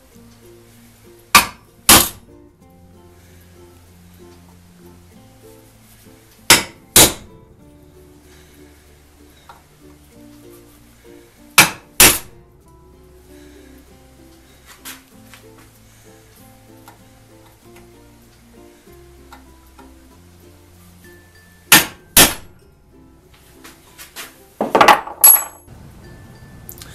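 Prick punch struck with a hammer on a steel plate to mark hole centres: sharp metallic taps in pairs about half a second apart, four pairs in all, then a quick cluster of knocks near the end. Quiet background music plays underneath.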